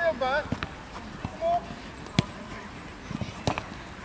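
A football being struck during play: three sharp thuds, the loudest about two seconds in. A brief voice is heard at the start, with faint background voices.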